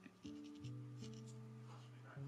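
Faint scratching of a mechanical pencil sketching on paper, under soft background music of held notes that shift a few times.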